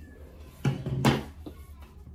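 Stretch satin fabric rustling and sliding over a cutting mat as it is pulled aside by hand, with two louder swishes about half a second and a second in, over a low steady hum.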